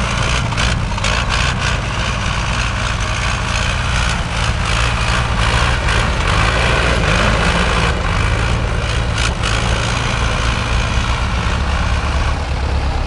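Small farm tractor's engine running steadily as the tractor drives about, a continuous low drone that swells slightly midway.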